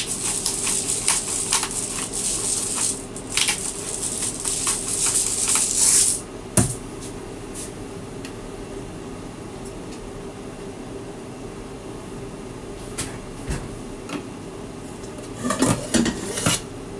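A bottle-type pepper grinder twisted by hand, crunching peppercorns in two spells of grinding over about six seconds, then a knock as it is set down on the counter. After that only a low steady hum with a few faint clicks and knocks.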